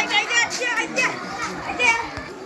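Children shouting and calling out at play, high-pitched voices bending up and down in pitch, with a loud call near the end.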